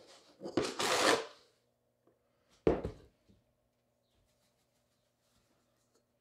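Measuring cup scooping granulated sugar from a plastic tub: a gritty rustle for about a second, then a single sharp knock a couple of seconds later.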